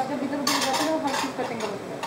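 Dishes and utensils clinking and clattering on a kitchen counter: a quick run of sharp clinks starting about half a second in and lasting about a second, with a person talking over it.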